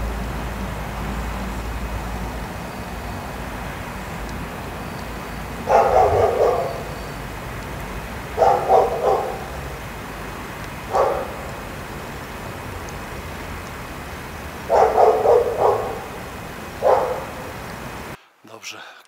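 A dog barking in five short bouts, each a second or less, over a steady background hiss.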